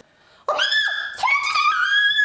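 A young woman's high-pitched screaming cries for help, staged as if she is drowning, starting about half a second in after a brief silence, in long held tones that waver and glide.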